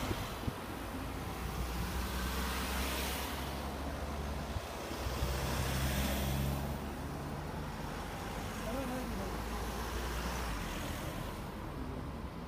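A line of cars and vans driving past one after another, their engine and tyre noise swelling as each goes by. It is loudest about three seconds in and again around six seconds in.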